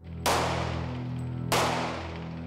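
Two pistol shots about 1.3 seconds apart, each with a short ringing tail, over background music holding a steady low chord.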